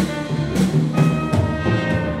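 Live symphony orchestra playing a film score, with sharp accented hits about every half second.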